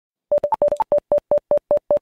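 A train of short electronic beeps on one pitch, with two higher beeps among the first few; they come quick and uneven at first, then settle into an even pace of about five a second.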